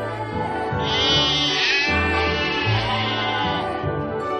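A flock of cartoon sheep bleating together over background music. The bleats come in about a second in and last roughly three seconds.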